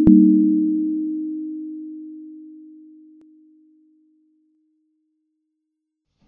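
Last note of a short electronic intro jingle: a pure, low synthesized tone struck once and fading out slowly over about four seconds.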